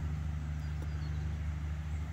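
A steady low mechanical hum, like an engine or motor running at a constant speed, unchanging throughout.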